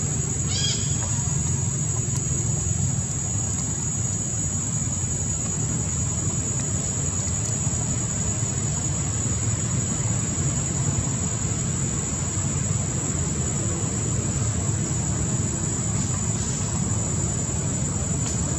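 Steady low outdoor rumble under a constant high-pitched whine, with one short squeaky animal call about a second in.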